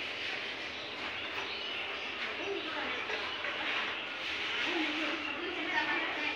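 Indistinct, distant voices over a steady background hiss.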